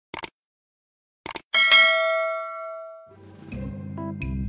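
Subscribe-animation sound effects: a quick double click near the start and another just over a second in, followed by a bright bell ding that rings out and fades over more than a second. Soft music starts near the end.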